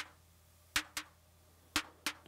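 Short, bright electronic snare hits from a Nord Drum, about one a second, each followed a fraction of a second later by a second hit: the drum double-triggering as the trigger length is lengthened toward a gate.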